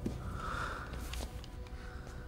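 A man's short, sharp sniff, drawing breath in through the nose, over a low steady background rumble.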